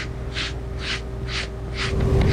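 A dye-soaked sponge rubbing leather dye into a leather sofa cushion, with short strokes about twice a second.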